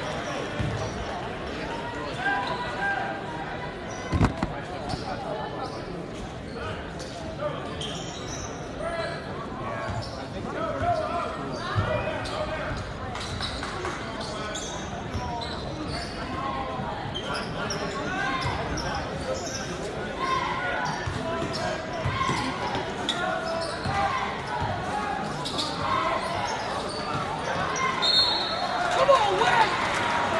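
Basketball game sound in a large gym: a basketball bouncing on the hardwood court amid constant crowd chatter, with the room's echo. Near the end comes a short high blast that fits a referee's whistle.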